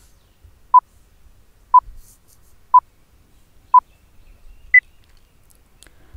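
Countdown timer sound effect: four short, identical beeps one second apart, then a final higher-pitched beep near the end marking the end of the count.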